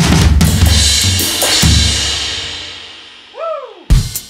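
Electronic drum-kit sounds from a drum machine: a quick run of kick, snare and cymbal hits in the first second and a half. The cymbal then rings out and fades over about two seconds. Near the end a short pitched swoop rises and falls, followed by a new drum hit.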